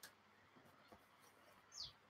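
Near silence: room tone, with one brief, faint, high chirp falling in pitch near the end.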